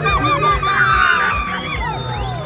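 A street crowd shouting and chanting in short, quickly repeated calls, over music with a steady beat.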